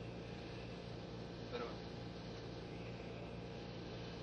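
Steady hiss and low hum of an open spacecraft air-to-ground radio channel between transmissions, with a brief faint voice fragment about one and a half seconds in.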